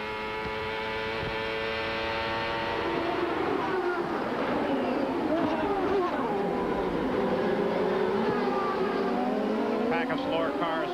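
Onboard sound of a CART Indy car's turbocharged V8 held at high revs on a straight. About three seconds in it gives way to several Indy cars heard from trackside, their engine notes sweeping down and back up as they brake and accelerate through the corners.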